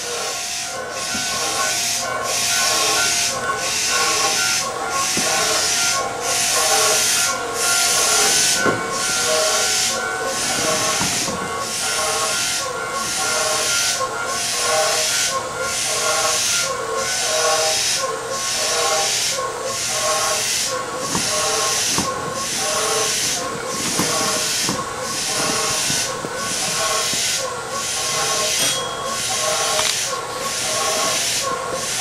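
Keisei 3700-series electric commuter train heard from inside the car as it gets under way: the whine of the traction motors with a steady wheel-on-rail hiss that pulses at an even rhythm.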